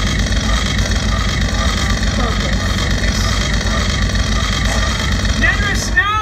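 Steady loud rumbling and hissing stage effect as a jet of steam vents from the top of the set wall.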